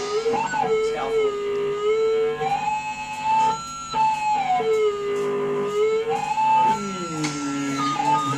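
A small rock band playing live: electric guitars and a drum kit, with long held notes that slide up and down in pitch.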